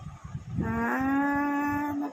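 A person's voice drawing out one long note: it slides up about half a second in, then holds steady on one pitch for about a second and a half, like a playful moo.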